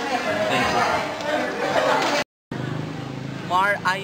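Only speech: a man talking, cut off abruptly by a brief silent gap about two seconds in, after which another man starts speaking.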